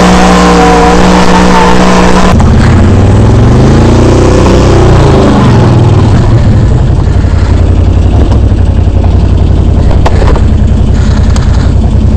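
Can-Am Renegade 800R's Rotax V-twin engine running at a steady speed under way, then, after an abrupt change about two seconds in, revving up and back down before settling to low revs as the ATV is ridden up into a pickup truck's bed.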